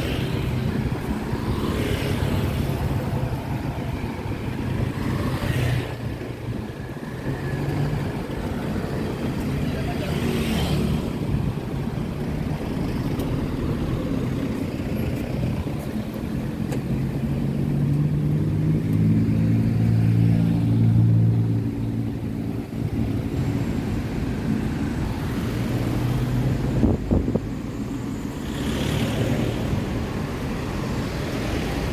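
Street traffic: cars, vans and motorcycles driving past with a steady engine and tyre rumble, one vehicle's engine passing loudest about two-thirds of the way through. A brief knock sounds near the end.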